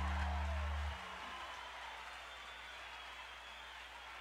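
A live band's last chord ringing out at the end of a song, its held bass note cutting off about a second in. Faint crowd applause and hiss follow.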